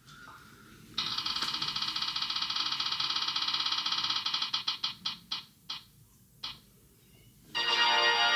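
Spinning-wheel sound effect from a phone app, heard through the phone's speaker: a fast run of ticks starts about a second in and slows to single, spaced ticks until the wheel stops. A short jingle near the end announces the result.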